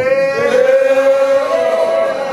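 A man's voice chanting a prayer in a sung, intoned style, holding one long note that steps up slightly near the end.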